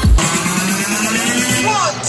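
Live electronic dance music from festival speakers, heard from inside the crowd. The kick drum drops out just after the start, leaving a rising synth build-up with voices over it near the end.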